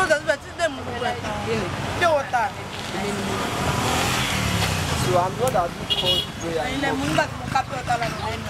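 A motor vehicle passes by on the street, its engine and road noise swelling to a peak about four seconds in and then fading, with people talking over it.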